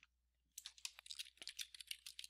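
Faint typing on a computer keyboard, a quick run of key clicks starting about half a second in, as a comment is typed into a text box.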